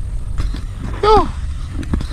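Wind buffeting a small action-camera microphone, a steady low rumble, with a short voiced exclamation about a second in.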